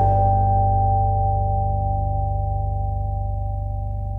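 Ibanez SRF700 fretless electric bass letting a chord ring. The chord is struck just before and held as several steady, pure tones that slowly fade.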